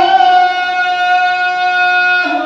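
A muezzin calling the adhan, the Islamic call to prayer: a man's voice holding one long, steady sung note.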